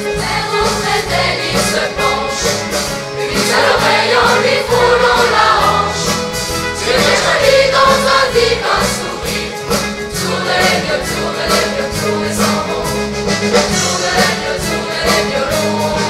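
A youth choir of mostly girls' voices singing together over a live pop band of keyboard, guitars and drums, with a steady low bass line underneath. The voices swell louder in the middle of the passage.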